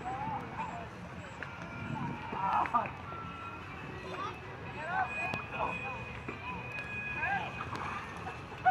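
Background hubbub of children's voices, with scattered short calls and shouts over a steady haze of crowd noise and no close-up speech.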